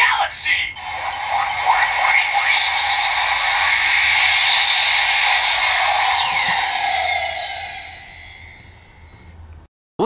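Electronic sound effect from the lit-up DX Kyuren-Oh robot toy's speaker: a brief voice call at the start, then a long rushing effect that fades away over the last few seconds.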